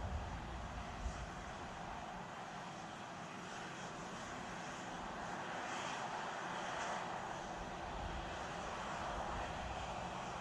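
Steady rushing noise from the launch-tower area, with low wind buffeting on the microphone at the start and again about eight seconds in.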